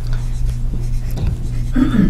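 Dry-erase marker writing on a whiteboard, faint strokes heard over a steady low electrical hum. A brief vocal sound comes near the end.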